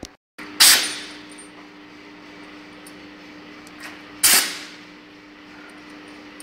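Workshop machine cycling: two loud sharp bangs about three and a half seconds apart, each with a short hissing tail, over a steady machine hum.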